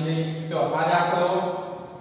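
A man's voice speaking in a drawn-out, sing-song way, holding long vowels, then pausing near the end.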